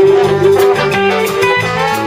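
A live band plays an instrumental jam passage: electric guitars over a bass line and a drum kit with steady cymbal strokes.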